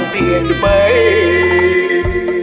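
A man singing a slow Khmer song over an instrumental backing track, his voice sliding between notes and holding them over a steady bass line.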